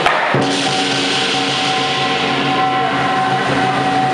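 Lion dance percussion band playing: a drum with ringing cymbals and gong, continuous and loud. The sound drops out briefly just after the start.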